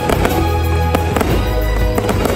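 Fireworks going off in several sharp bangs over loud show music with strong bass.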